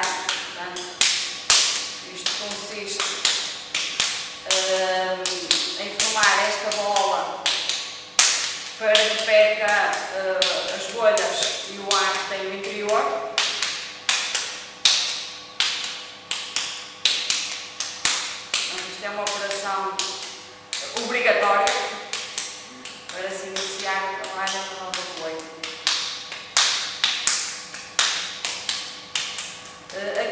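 A lump of wet clay slapped and patted between the hands, a steady run of short slaps about two to three a second, as it is formed into a ball to drive out air bubbles before throwing. A voice is heard in stretches over the slapping.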